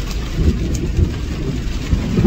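Steady low rumble of the truck's engine and tyres heard from inside the cab while driving in heavy rain, with a few short low thumps.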